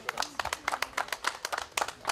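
Small crowd applauding: many irregular hand claps, several a second.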